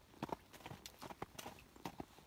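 Hoofbeats of a Danish Warmblood horse walking on frozen, hard arena footing: a run of short, sharp clops.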